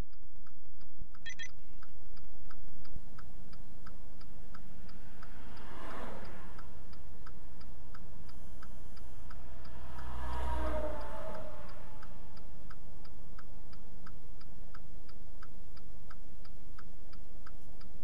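Car's turn-signal or hazard flasher clicking steadily, about two clicks a second, over a steady low engine idle. Two vehicles pass by, one about a third of the way in and another just past the middle.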